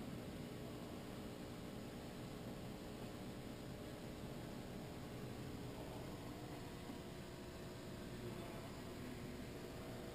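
Faint steady hum and hiss of machine-shop background, with a few low steady tones and no distinct mechanical event.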